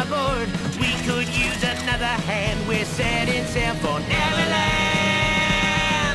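Upbeat rock music instrumental break: an electric guitar lead with bending, wavering notes over bass and drums, settling into a long held note about four seconds in.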